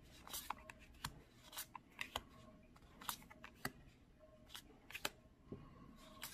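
Tarot cards being handled and laid one onto another on a pile, making faint, irregular soft clicks and slides of card on card, one or two a second.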